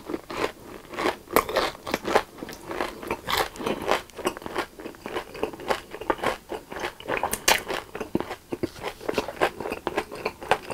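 Close-miked chewing of a mouthful of sugar-coated, deep-fried Korean corn dog, the fried batter crust crunching with many irregular crackles, several a second.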